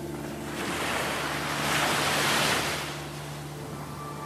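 A wave-like rush of noise in a chill-out track, swelling about half a second in, peaking around two seconds and fading away, over a low held synth note.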